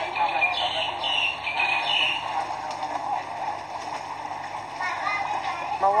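Water splashing and churning as a dense crowd of fish thrashes at the surface, under people's voices.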